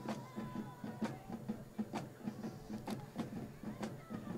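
A quick, steady drum beat, with stadium crowd noise and scattered sharp knocks under it.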